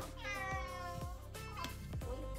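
A domestic cat meowing once: one drawn-out meow of about a second and a half that rises briefly and then slowly falls in pitch.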